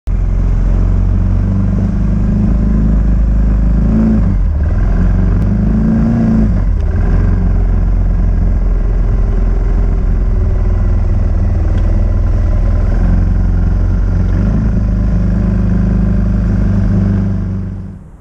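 Engine of an old Honda off-road vehicle running under way, its pitch rising and falling with the throttle a few times, then dropping away just before the end.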